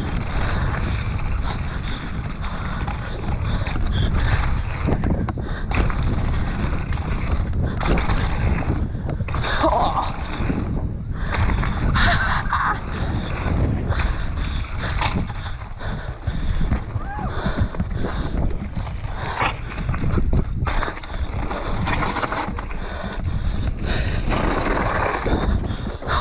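Mountain bike riding fast down a loose gravel trail: wind buffets the bike-mounted or helmet microphone, and the tyres run over stones while the bike rattles and knocks over the bumps.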